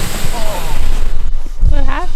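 Loud, uneven low rumbling and buffeting on a moving camera's microphone, broken twice by short wordless voice sounds.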